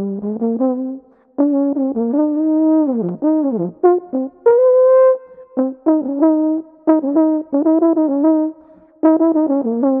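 Trombone played with a plush toy banana stuffed in its bell as a mute: a short tune of quick separate notes, with a couple of notes bending down in pitch and one longer, higher note held in the middle.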